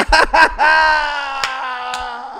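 A man laughing loudly: a few quick bursts, then one long, high held laugh that slowly falls in pitch.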